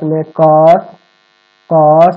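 A man's voice with long, drawn-out vowels, breaking off for about half a second of silence past the middle before starting again.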